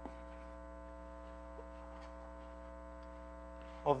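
Steady electrical mains hum, with a faint tick near the start and another about one and a half seconds in; a man's voice comes in at the very end.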